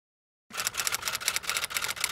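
Typewriter key-strike sound effect: a rapid run of sharp clicks starting about half a second in, matching the letters of a web address appearing one by one.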